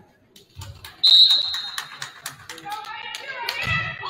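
A referee's whistle blows once, a short steady high note about a second in. A quick run of sharp smacks follows, then players' voices calling out as the serve goes up.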